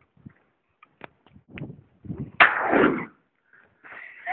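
A single 20-gauge shotgun shot about two and a half seconds in: a sudden loud blast that dies away within about half a second, after a few faint ticks.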